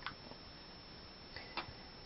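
A few small, sharp clicks of makeup items being handled: one right at the start, a fainter one just after it, and two close together about a second and a half in.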